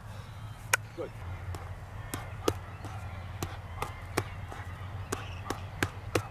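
Boxing gloves striking the partner's gloves in a drill: sharp slaps about two a second, over a steady low hum.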